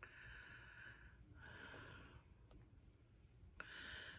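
Near silence with a few faint breaths: a soft breath in the first second, another around two seconds in, and a short one just before the end.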